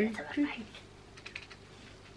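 A short spoken word, then faint scattered light clicks and ticks of a small plastic novelty item being fiddled with in the hands.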